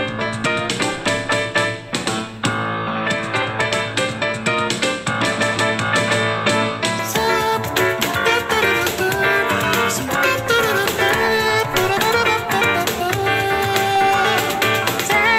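A music track played back through a small Zealot S55 portable Bluetooth speaker as a sound sample. About seven seconds in, the playback switches to the Eggel Active 2 Bluetooth speaker and the tone of the music changes.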